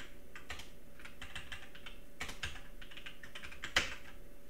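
Typing on a computer keyboard: a run of irregular key clicks, with one louder click near the end.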